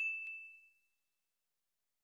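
Tail of a notification-bell 'ding' sound effect: a single high ringing tone fading out within the first second, with a faint click shortly after the start. Then silence.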